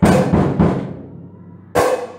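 Acoustic drum kit played in a beginner's exercise: a cymbal crash with the bass drum at the start, quick bass-drum strokes under the ringing cymbal, then a single sharp drum hit near the end.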